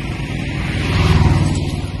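A motor vehicle engine running close by, its rumble growing louder to a peak about a second in and then easing off.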